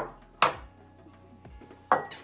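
Kitchenware clinking as ceramic bowls are handled over metal baking trays: three sharp clinks, a pair about half a second apart and another just before the end.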